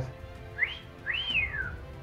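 A two-note wolf whistle: a short rising note, then a longer note that rises and falls, the whistle of admiration for an attractive woman.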